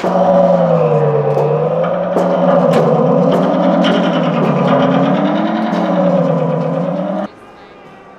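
Satellite-dish gong struck with a mallet, its sound picked up by electronics and played through a speaker as a loud, wavering, pitch-bending electronic drone. The drone cuts off suddenly about seven seconds in.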